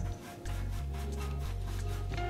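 Bristle paintbrush scrubbing oil paint onto a canvas in quick, repeated strokes. Background music with held low bass notes plays throughout.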